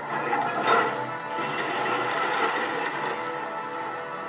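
Dramatic film score from a television speaker, with a sharp hit about a second in.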